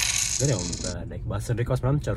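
A coin-jingle money sound effect: a bright metallic shimmer that cuts off about a second in, with a man talking over and after it.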